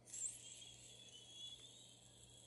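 Faint steady hiss as a small pipe is lit with a lighter and drawn on, with a brief louder flare just after the start.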